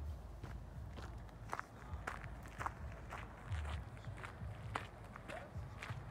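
Faint footsteps walking at a steady pace across the ground outdoors, a short step sound roughly every half second.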